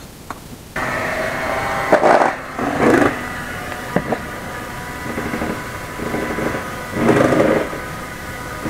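Electric hand mixer switched on about a second in and running with a steady motor whine, its beaters working through whipped cream in a metal bowl, the sound swelling now and then as they move.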